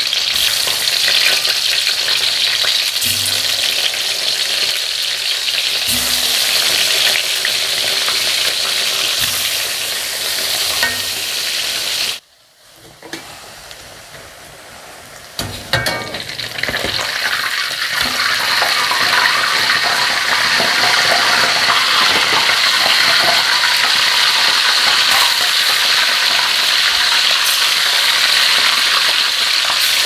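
Tofu and tempeh deep-frying in hot oil in a steel wok: a steady, loud sizzle. About twelve seconds in it drops to a much quieter sizzle for about three seconds, then comes back, with a few knocks of a metal spatula against the wok.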